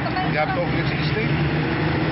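People talking over a steady low hum and a wash of background noise.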